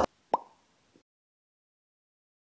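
A single short plop with a quick upward pitch glide, about a third of a second in.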